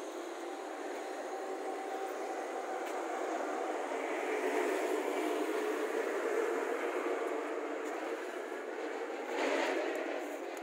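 Steady vehicle noise that builds to its loudest about halfway through, with a brief louder surge just before the end.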